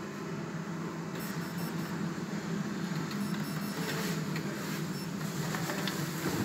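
Steady mechanical hum inside a Kone EcoDisc lift car, with a faint, high-pitched, intermittent electronic whine from about a second in.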